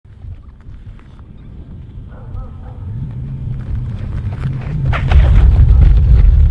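Low wind rumble on the microphone, growing louder and heaviest in the last second, with scuffs and scrapes on the ice as a person slides across it.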